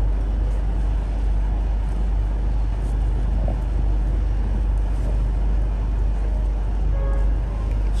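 Steady background rumble and hiss with a strong low hum underneath, unchanging throughout.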